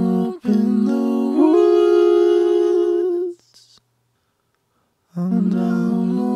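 Layered, Auto-Tuned a cappella vocals singing a line in held, stepping chords. They cut off a little over three seconds in and come back after a short silence near the end.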